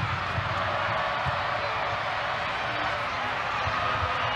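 Stadium crowd noise: a steady wash of many voices from a large crowd in the stands.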